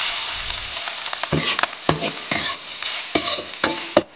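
Food sizzling in hot oil in a wok, with a spatula knocking and scraping against the pan several times.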